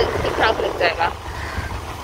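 Steady low rumble of a moving vehicle with wind noise on the microphone, and brief snatches of women's voices.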